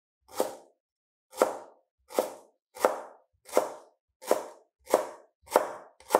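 Chef's knife slicing through a fresh stalk and tapping down onto a plastic cutting board, eight cuts, about one every 0.7 seconds and slightly quickening toward the end.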